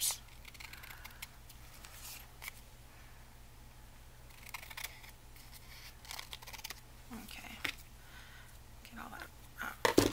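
Scissors cutting paper in a series of short snips, trimming the overhanging edge of paper glued onto a card.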